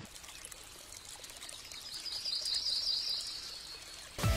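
Faint outdoor ambience: a soft, steady rush of running water, with a bird's rapid trill of short high chirps about halfway through.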